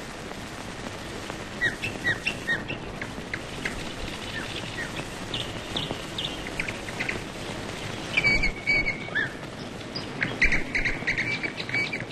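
Birds chirping in short notes, with a few longer held whistles in the second half, over a steady soundtrack hiss.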